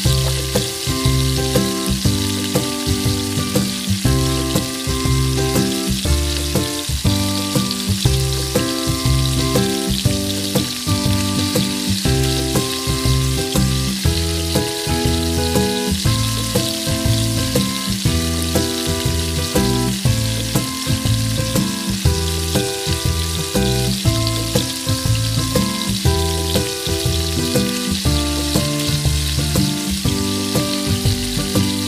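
Sauce sizzling and bubbling in a wok as sambal squid cooks, with a wooden spatula stirring through it. Background music with a steady beat and a melody plays over it.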